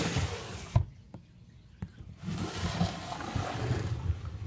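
Plastic reptile rack tubs being slid along their shelves, a rough scraping rub heard twice, with a sharp knock about a second in and a few faint clicks between.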